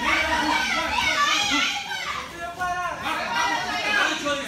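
Spectators' voices shouting over one another, several of them high-pitched, with a brief lull a little past the middle.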